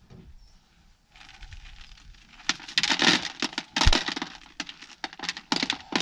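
Ear of dried field corn being shelled by hand over a plastic bucket: kernels crack off the cob and rattle into the bucket in a dense run of clicks from about two and a half seconds in. One louder crack comes just before the four-second mark, the cob snapping in half.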